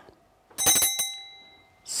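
A small metal hand bell struck twice, about half a second apart, sounding one clear pitch with bright overtones that rings on and fades away within about a second.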